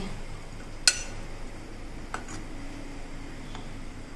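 Glass mixing bowl clinking as boiled potato chunks are tossed in cornflour. There is a sharp clink about a second in, another about two seconds in, and a fainter one near the end.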